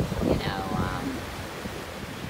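Small waves washing over a rocky cobble shore, with wind buffeting the microphone in a low, uneven rumble. A short vocal sound falls in pitch within the first second.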